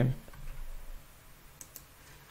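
Two faint, quick clicks from working a computer, about a second and a half in, over a low steady hum.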